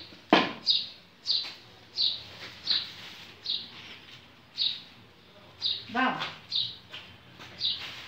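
A bird chirping repeatedly, short high chirps about once or twice a second, with a loud falling sweep shortly after the start.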